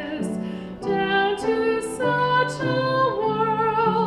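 Mixed church choir singing in parts, holding chords that change about once a second, with the sung consonants clearly heard.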